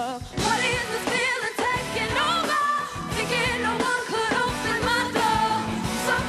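Live pop-rock band playing with a female lead singer: drums, electric guitar and keyboard under a sung melody.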